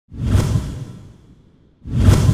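Opening whoosh sound effect: a loud swell that rises fast and fades away over about a second, then a second one starting near the end.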